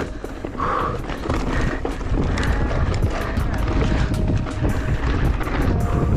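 2016 Giant Reign mountain bike clattering and rattling over rough, rocky trail at speed, with many sharp knocks and a low wind rumble on the camera's microphone, under background music.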